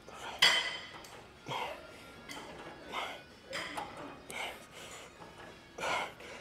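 Leg extension machine worked through repeated reps, its weight stack clinking roughly once a second, with music underneath.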